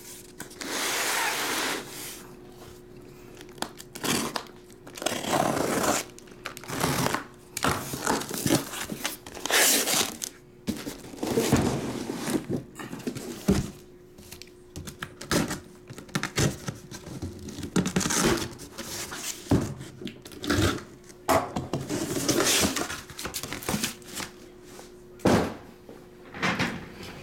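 A cardboard shipping case being unpacked by hand: irregular tearing, rustling and scraping of cardboard and packing tape, with thunks as boxes of trading cards are lifted out and set down on the table. A faint steady hum runs underneath.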